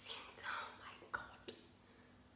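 A woman whispering faintly, breathy and without clear words, through the first second or so, followed by a couple of small clicks.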